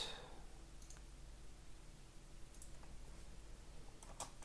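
Faint, scattered clicks of computer keyboard keys as an IP address is typed into a terminal.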